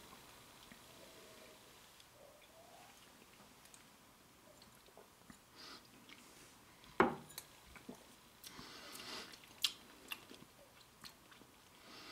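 Faint mouth sounds of a man tasting neat rye whiskey: quiet at first, then a soft knock about seven seconds in, followed by scattered lip smacks and tongue clicks.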